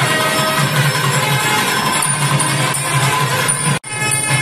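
Instrumental music playing steadily, with a sudden brief dropout just before the end.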